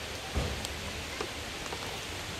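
Steady rush of falling water from the waterfall and its stream, with one brief low thump about half a second in.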